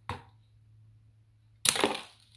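A LEGO spring-loaded shooter fires near the end with a loud, sharp snap and brief clatter, as its red plastic projectile strikes a minifigure and drops onto a wooden table.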